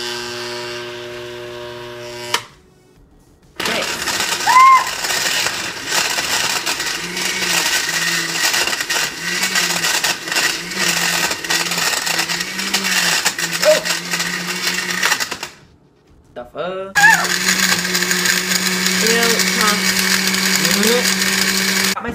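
Sunbeam countertop blender running on its smoothie setting, grinding and rattling through ice cubes and chunky ingredients. The motor stops about two seconds in, starts again a second later with a pulsing pitch, pauses briefly around sixteen seconds, then runs again.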